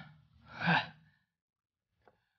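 A person's short breathy exhale, like a sigh, about half a second long.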